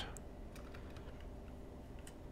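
Faint, scattered clicks from working a computer's keyboard and mouse over quiet room tone.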